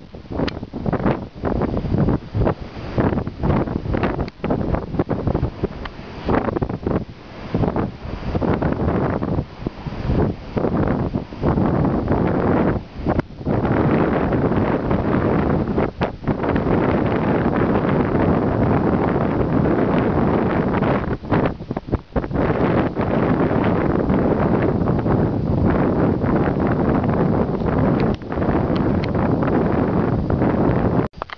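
Strong wind buffeting the microphone: loud, choppy gusts with many brief lulls in the first half, turning steadier from about halfway.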